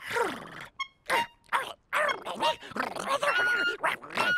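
A small cartoon monster jabbering in made-up creature noises: a quick run of short cries that swoop up and down in pitch, with a brief high ping about a second in.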